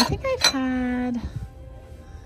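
Ceramic dishes clinking twice as a bowl is lifted off a stack of plates and bowls on a glass shelf, followed by a short held pitched tone.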